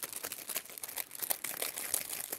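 Clear plastic packet crinkling and crackling in the hands as it is opened, a rapid, irregular run of crackles.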